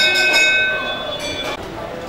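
Metal temple bell rung rapidly and repeatedly, several high ringing tones together. The strikes stop about half a second in and the ringing dies away until it is cut off about a second and a half in, with crowd voices underneath.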